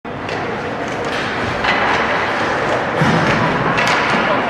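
Ice hockey play in an indoor rink: a steady noisy wash from the skating, broken by several sharp knocks of sticks, puck and boards, the sharpest just before the end.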